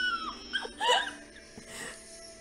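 A woman laughing in short, high giggles that slide up and down in pitch.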